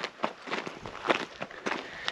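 Footsteps on gravel: a few uneven, short steps.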